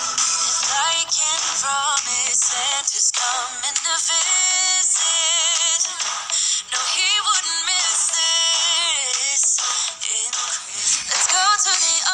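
Background music with a sung vocal line whose pitch wavers and glides.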